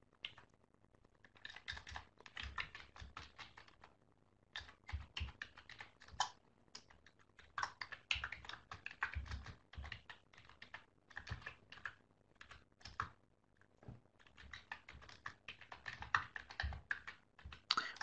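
Faint typing on a computer keyboard: irregular runs of keystroke clicks with short pauses between them.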